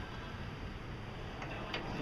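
Low, steady background noise with a few faint clicks near the end.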